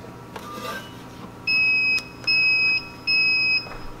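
Melitta XT4 coffee machine beeping three times in a row, each beep a steady high tone of about half a second. The beeps are the machine's prompt to go on with the milk-system cleaning program.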